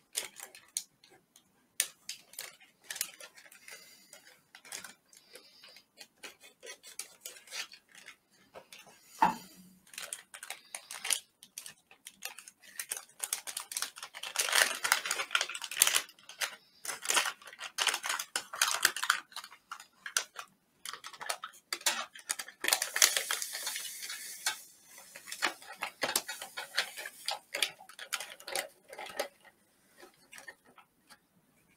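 Plastic MRE ration packets being cut and torn open and handled, with crinkling and rustling of the packaging and small clicks and knocks of a knife and items against a metal tray. The crinkling is densest and loudest about halfway through and again a little later.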